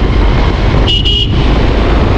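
Loud, steady wind and engine noise on a moving motorcycle rider's camera microphone, with a short vehicle horn toot about a second in.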